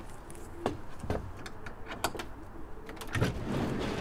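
Knocks and clatter at a wooden pigeon loft as its door and a handheld feed tin are handled: several separate sharp knocks spread over the seconds, then a rustling that builds in the last second.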